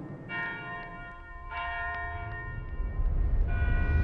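A church bell struck three times, each stroke ringing on in a cluster of steady tones, over a deep rumble that swells near the end.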